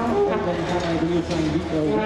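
A man's voice making announcements in Dutch over a public-address loudspeaker, over a steady low hum.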